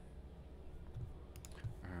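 Faint scattered clicks and a few soft low thumps over quiet room tone. A voice starts right at the end.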